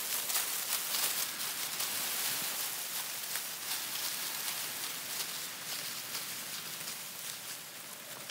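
Dry, dried-down corn plants rustling and crackling as their leaves and stalks are pushed over one after another at ear level, in a push test for stalk strength. Many small crackles run through it, with no single loud snap standing out.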